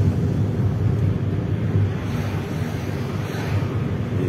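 Steady low rumble of road and engine noise from a car driving along a road.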